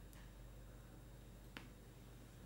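Near silence with a low steady hum, broken by a single short faint click about one and a half seconds in.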